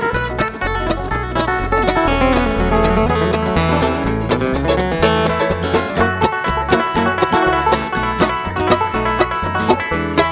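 Live bluegrass string band playing an instrumental break: quick picked mandolin and five-string banjo over acoustic guitar and a bass line.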